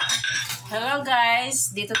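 Spoons and plates clinking and clattering as they are handled on a table, a short burst of sharp strokes at the start.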